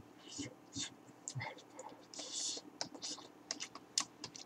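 Chopsticks clicking and tapping as they stir noodles in a paper cup noodle bowl: a scattered run of small sharp clicks, with a few short hissy sounds in between, the longest about two seconds in.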